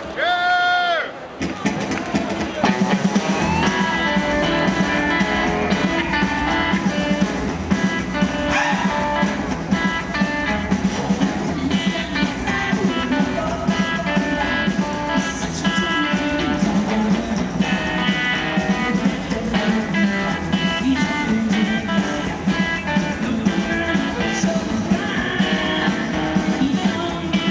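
Rockabilly band playing live: electric guitar over a drum kit. After a short note at the very start, the full band comes in about a second and a half in and plays on steadily.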